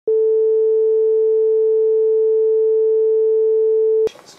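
A single steady electronic tone, like a test-tone beep: one unchanging mid pitch held for about four seconds, starting suddenly and cut off abruptly.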